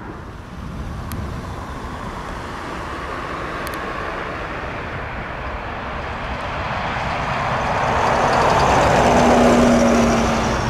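Jet engines of an Airbus A330-300 on the runway. A steady rushing noise that grows louder over the last few seconds, with a low hum coming in near the end.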